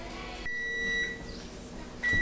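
Electronic oven timer giving one steady high-pitched beep of just under a second, starting about half a second in. It signals that the cornbread's baking time is up.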